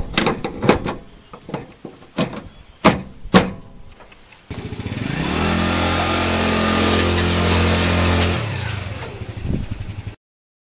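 Several sharp metal clicks and knocks from a tubular steel wheel chock being set onto its keyed shoulder-bolt mounts on a wooden trailer deck. About halfway through, an ATV engine runs at a steady pitch as the quad is ridden up aluminum loading ramps into the trailer, then eases off shortly before the end.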